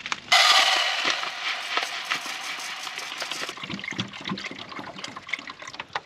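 Water poured into a cooking pot of rice: a hissing pour that starts suddenly, is loudest at first and tapers off after about three seconds, followed by a few light clinks and knocks.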